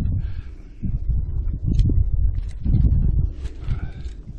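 A helmet and tactical gear being handled: rustling and low thumping buffets on the microphone, with a few sharp clicks as the helmet is lifted off.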